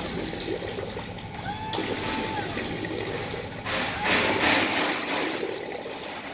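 Magnetic-pump liquid filling machine running two short automatic fill cycles, each a steady pump whine of under a second that glides in and out. Water rushes and splashes through the outlets, loudest around the second cycle.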